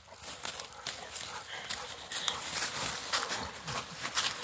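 Two Rottweilers play-wrestling in dry leaf litter: dead leaves and twigs crackling and rustling under their paws. Low play growls come from the dogs, mostly in the second half.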